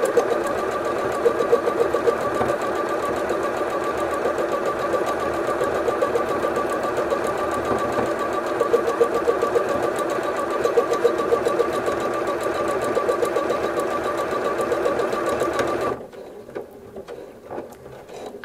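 Bernette B38 computerized sewing machine running steadily as it stitches out programmed lettering from its memory, with a steady motor whine under the needle's rapid rhythm. It stops by itself near the end, once the word is finished and tied off.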